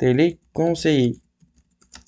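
A spoken word, then a few faint computer keyboard keystrokes clicking in the second half as the word is typed.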